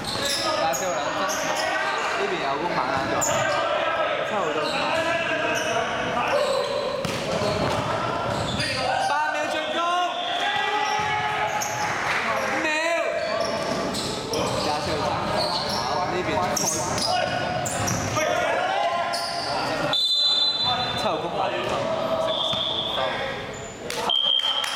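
Basketball game in play in a large echoing gym: a ball dribbled on the court floor with repeated bounces, sneakers squeaking on the floor in a few spots, and players' voices calling out.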